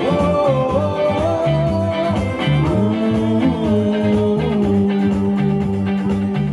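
Live rock-style band music: electric guitar and keyboard over a stepping bass line and a steady beat, with long held notes.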